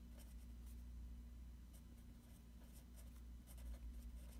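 Faint scratching of a pen writing on paper in short strokes, one after another, over a low steady hum.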